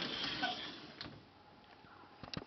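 Louvered wooden bifold closet door being folded open: a soft sliding rustle, then a single light click about a second in.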